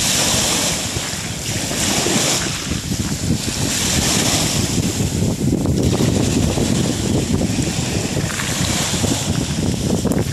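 Small sea waves breaking and washing up a shallow shore, the hiss of the surf swelling and fading every couple of seconds, with wind buffeting the microphone.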